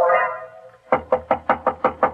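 The tail of a music bridge fades out, then a quick, even series of about seven knocks on a door, a radio-drama sound effect.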